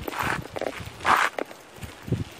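Footsteps crunching on a dry dirt-and-gravel track, two louder crunches about a second apart with lighter scuffs between.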